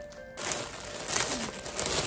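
Clear plastic packaging bag crinkling and rustling as a pair of jeans is handled inside it, starting a moment in and going on irregularly.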